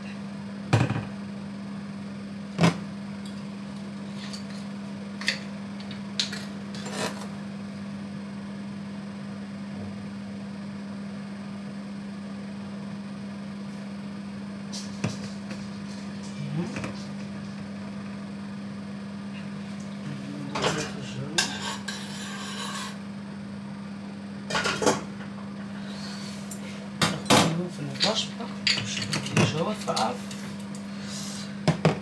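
Scattered clinks and knocks of kitchenware being handled on a counter: a metal pot lid, pans and a glass bottle, with a busier cluster of clinks near the end. A steady low hum runs underneath.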